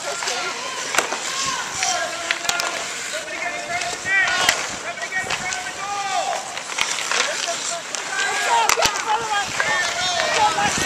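Youth ice hockey play on an outdoor rink: skates scraping the ice and a few sharp clacks of sticks and puck. Voices call out and shout throughout.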